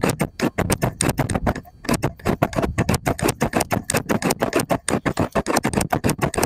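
Scissors snipping rapidly in a close, continuous run of sharp metallic clicks, with a brief pause a little under two seconds in.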